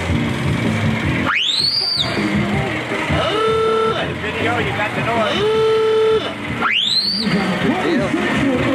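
Vintage touring car's klaxon-style horn sounding twice, about five seconds apart, each a rising whoop that drops off at the end, over background music and voices.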